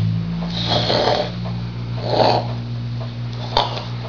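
A woman's low, throaty growling hum made with a sock in her mouth as she pretends to eat it, with two short noisy puffs about a second in and just after two seconds.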